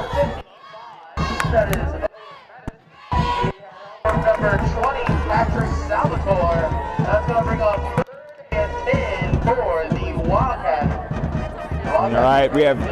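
Indistinct voices mixed with music, the sound cutting out abruptly several times and coming back.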